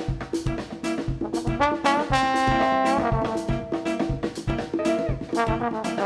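Trombone soloing over a steady drum-kit groove in a live Afro-jazz band. About two seconds in, it slides up into one long held note lasting about a second, then goes back to shorter phrases.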